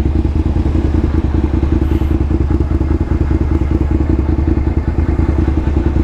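Suzuki SV650 motorcycle's V-twin engine idling steadily, a fast, even pulsing of its exhaust with no revving.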